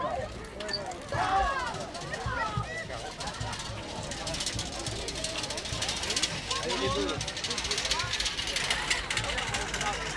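Onlookers chatting, and from about four seconds in a dense, fast clatter from an ox-drawn cart's wooden spoked wheels rolling over the road surface as it passes close.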